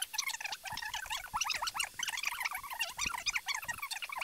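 Audio of a fast-forwarded recording, played back many times faster than normal, heard as a rapid, garbled, chirping chatter with no intelligible words.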